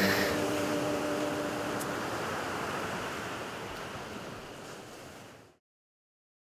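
Sea waves washing, a steady rushing that fades out gradually and cuts off shortly before the end.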